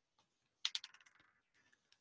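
Leather lacing being worked through punched holes in a leather piece: a quick run of small clicks and scuffs starting just over half a second in and dying away within about half a second.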